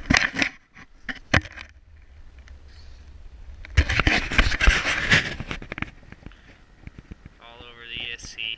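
Hands working the zippered fabric shroud of an RC truck, opening it: handling clicks and scrapes, with a louder rustling, scraping burst about four seconds in.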